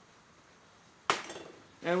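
A single sharp clink of a small dish being set down on the prep table, ringing briefly, about a second in.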